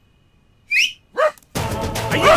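Two short rising whistle-like squeals a little under a second in, then music comes in loudly about one and a half seconds in.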